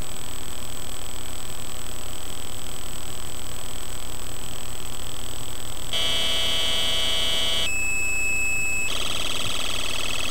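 1-bit square-wave buzz from a CMOS logic-chip synth on a solderless breadboard, played through a small speaker. A steady high tone jumps abruptly to a harsher, fuller buzz about six seconds in, then changes pitch and timbre twice more near eight and nine seconds as the jumper wires are repatched.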